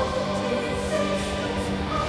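Rock backing track with a choir singing long held notes over sustained chords.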